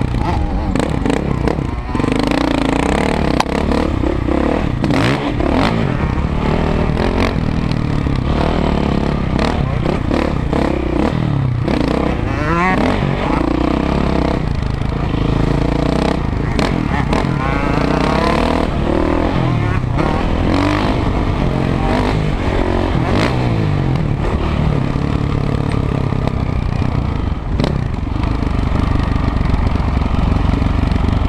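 A KTM 525 SX four-stroke single-cylinder motocross engine, heard from the rider's helmet camera, revving up and down repeatedly as it is ridden hard, rising and falling in pitch over and over. Wind buffeting and clattering knocks from the bike over rough ground run through it.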